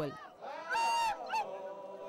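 Naga men in traditional dress chanting as a group, with a loud, high held call about half a second in, followed by a steadier sustained chant.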